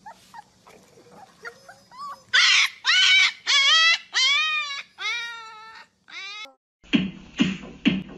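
Husky puppies howling: a few soft yelps build into a run of about six loud howls, each rising and then falling in pitch. Music with a steady beat takes over near the end.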